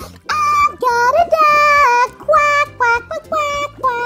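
Children's background music: a bright, high melody of short held notes, sung or played in a child-like voice, over a steady low accompaniment.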